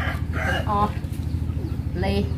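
Chickens clucking in a few short calls, with a rooster's crow just ending at the start, over a steady low mechanical hum.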